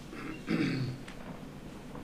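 A person's brief low vocal sound with a falling pitch, lasting about half a second, starting about half a second in after a short breathy noise.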